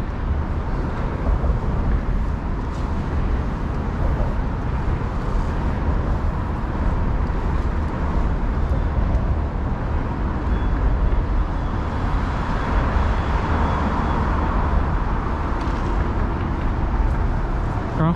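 Steady city traffic noise heard from the bridge walkway: a continuous deep rumble of vehicles, with no breaks.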